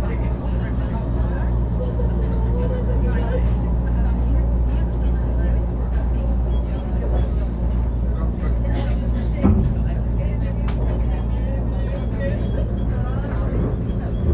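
Train running, heard from inside the passenger car: a steady low rumble and hum, with a single sharp knock about nine and a half seconds in.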